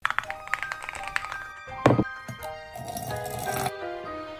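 Background music of quick, short notes. A single knock sounds just under two seconds in.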